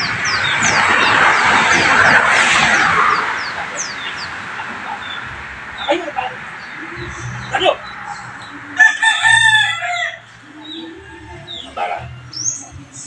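A rooster crowing once, a wavering pitched call about nine seconds in, with small birds chirping. A loud rushing noise fills the first few seconds.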